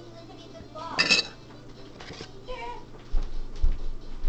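A short, loud, high-pitched vocal call about a second in, a fainter one a second later, then several low thumps as the phone is knocked and moved.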